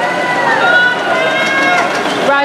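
Several voices yelling long, drawn-out cheers at swimmers in a race. Each call is held for about a second and drops in pitch at its end, over the noise of a crowd in an indoor pool hall.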